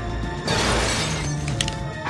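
Glass shattering about half a second in, a sudden crash that fades over most of a second, over tense orchestral trailer music with a low sustained bass.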